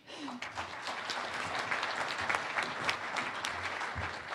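Audience applauding. The clapping breaks out at once and keeps going at an even level.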